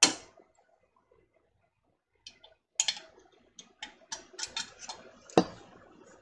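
A sharp clink of metal on glass, then a run of small clicks and taps, about three or four a second, with a heavier knock about five seconds in: a hot one-piece metal canning lid being handled on a glass jelly jar that is held in a towel and turned to screw the lid down.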